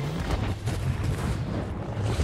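Film sound effect of a huge snowball rolling and tumbling down a snowy slope: a deep, continuous rumble with rough, crunching bursts on top.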